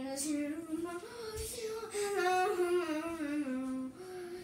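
A solo voice singing a wordless melody in a small room: held notes rise about a second in, then step down, with a wavering, vibrato-like note in the middle.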